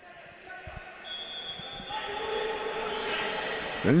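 Echoing sound of a futsal game in play in a gymnasium: players' voices calling out on court and the ball being kicked. The sound grows louder toward the middle.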